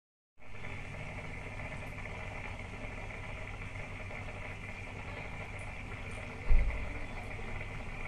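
Steady hum and hiss of an aquarium pump, heard by a camera submerged in the tank. A single loud, low thump comes about six and a half seconds in.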